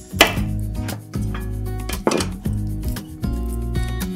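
Chef's knife cutting a garlic clove on a wooden cutting board: a few knocks of the blade on the board, the loudest just after the start and another about two seconds in, over background music with steady held notes.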